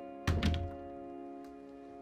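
A heavy double thud about a quarter second in, loud and deep, over background music of sustained chords.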